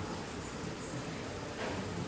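Cello played softly with the bow, a quiet low passage with a faint sustained low note, and a soft swish of noise about one and a half seconds in.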